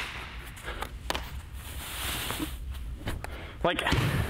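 Feet scuffing on artificial turf with a few short, sharp knocks as a ground ball bounces in and is caught in a Mizuno Franchise baseball glove. A man starts to speak near the end.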